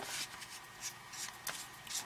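Flashlight tail cap being unscrewed by hand: faint rasping of the threads and handling rustle, with a couple of small clicks near the end.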